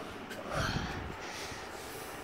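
A short snort or puff of breath close to the microphone about half a second in, with a brief low rumble, over faint room noise.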